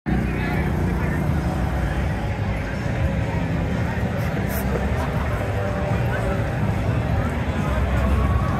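Indistinct chatter of a crowd of people over a steady low rumble.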